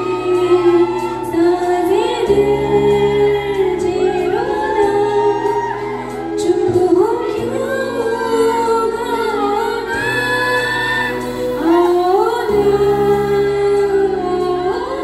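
A woman singing a slow, gliding melody into a microphone over backing music of sustained chords, the bass note changing about every two and a half seconds.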